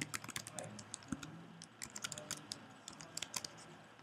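Typing on a computer keyboard: a run of quick, irregular key clicks, fairly faint.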